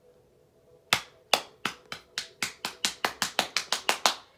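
A run of about fifteen sharp knocks from the horror video playing on the TV. They begin about a second in and speed up steadily, from about two a second to about seven a second.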